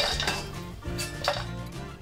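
Steel ladle knocking against an iron kadhai as fried asafoetida is scooped out of the oil: a sharp clink at the start and another about a second later.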